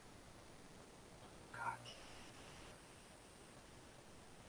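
Near silence: faint room tone, broken once about a second and a half in by a brief, soft vocal sound from a person, a murmur under the breath.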